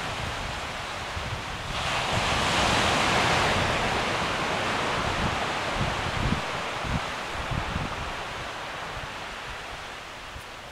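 Wind gusting through the undergrowth and buffeting the microphone with low rumbles. A louder rush of wind swells about two seconds in and dies away over the next couple of seconds.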